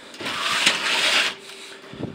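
Rustling, scraping noise for about a second, with a sharp click in the middle, over a faint steady hum.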